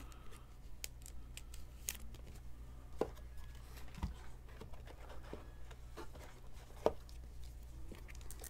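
Faint rustle and a few light clicks of a trading card being handled and slid into a soft clear plastic sleeve, over a steady low hum.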